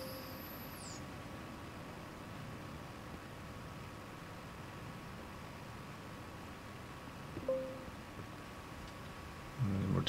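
High-pitched whine of a motorised telescope mount finishing its slew to the target. The whine falls away and stops about a second in, leaving a faint steady hum. About seven and a half seconds in there is one brief faint squeak-like tone.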